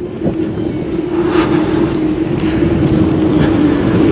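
A road vehicle driving by on the adjacent road: a steady engine and tyre drone with a strong hum.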